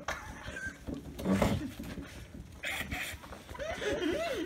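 A person's short, stifled vocal noises through pressed lips, a few scattered grunts and breaths with quiet gaps between them.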